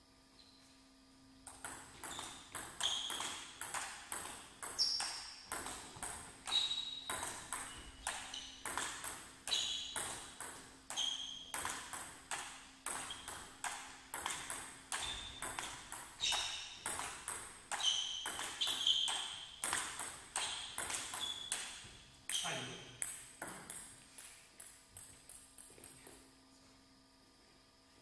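Table tennis ball clicking off paddles and the table through a long rally, about two sharp clicks a second. Near the end of the point comes a short, falling cry, then softer, quicker clicks that fade as the ball bounces away.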